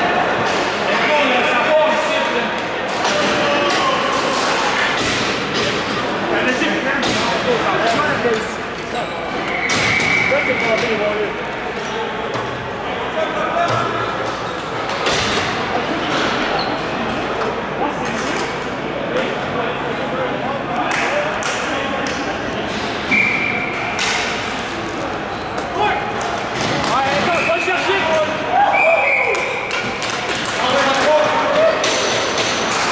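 Indistinct voices of players echoing around an indoor ball hockey rink, with scattered sharp knocks of sticks and ball on the sport-tile floor and boards, and a few short high squeaks.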